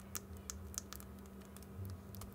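Membrane push-buttons on an HME COM6000 wireless intercom belt pack pressed by thumb in quick succession, giving a series of faint small clicks from the metal snap domes beneath them. Buttons whose domes have gone flat press without a click.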